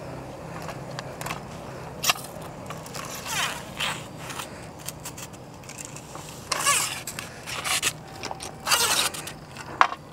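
Sections of a telescopic hand fishing pole scraping as they are pulled out, in several short rasps a second or two apart, over a steady low hum.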